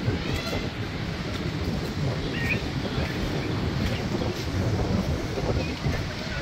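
Wind blowing on the microphone, a steady low rumble, with faint voices of people in the background.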